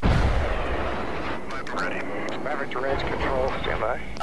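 Fighter jet passing low and fast: a loud rush of jet noise that starts suddenly, is loudest at first, then carries on as a steady roar, with voices over it from about the middle.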